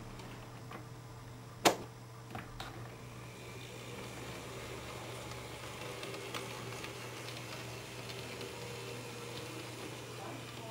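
N-scale model freight train running slowly on the layout: a steady low hum with faint clicking from the wheels on the track. There is one sharp click a little under two seconds in, followed by a couple of smaller clicks.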